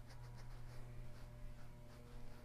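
Faint soft scuffing of a damp sponge wiped over a clay pinch pot in short repeated strokes, over a low steady hum.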